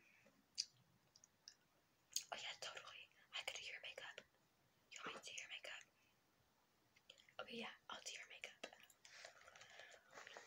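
Soft whispering in a few short phrases with pauses between them.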